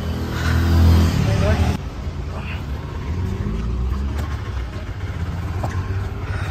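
Road traffic: a motor vehicle's engine running close by, loudest in the first two seconds, giving way suddenly to a steadier low traffic rumble.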